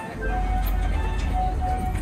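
Music: a simple melody of short notes, several repeated at the same pitch, over a steady low rumble.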